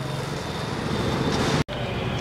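Steady street background noise with the low rumble of road traffic. It cuts out for a split second about one and a half seconds in.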